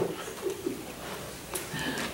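A faint, low hum of a man's voice during a pause in the talk, then a light click about one and a half seconds in.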